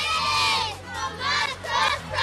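A group of young schoolchildren shouting and cheering together: a long shout at the start, then two shorter bursts of shouting.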